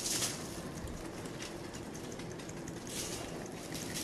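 Dry seasoning rub shaken from a shaker bottle onto a brisket and the foil beneath it: a faint, hissing patter of granules that comes in short swishes, one at the start and another about three seconds in.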